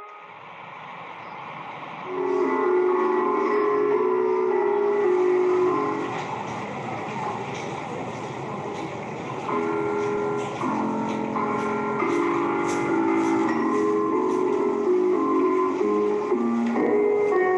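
Piano notes from a musical staircase, each step sounding a note as people walk up it, over the steady noise of a subway station with trains. The notes come in runs, starting about two seconds in and again from about halfway through.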